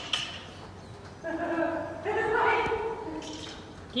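A person's voice, drawn out, about a second in and lasting nearly two seconds, with the soft footfalls of a walking horse on arena footing beneath it.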